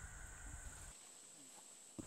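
Near silence with a faint, steady high-pitched insect chorus. The low background rumble cuts out abruptly about halfway through.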